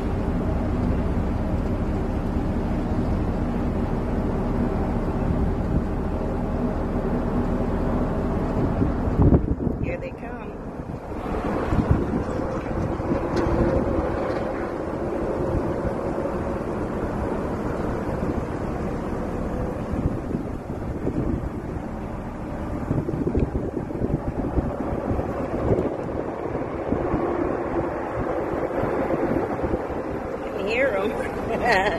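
Wind buffeting the phone microphone over idling traffic at an intersection, with the distant drone of ARCA stock cars running on the speedway. Steady engine tones fill the first nine seconds or so. About ten seconds in the sound changes abruptly and the wind rush takes over.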